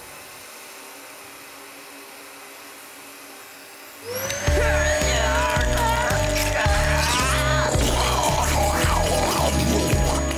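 A quiet stretch with faint hiss, then about four seconds in a cartoon backpack hose-gun powers up with a rising whine that levels off and holds. Loud music with a pounding beat comes in with it.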